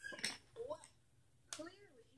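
Quiet, indistinct speech in a few short mumbled bits, with gaps between them.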